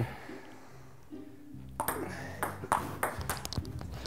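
Table tennis rally: the ball clicking off paddles and the table in quick succession, starting a little under two seconds in after a short quiet spell.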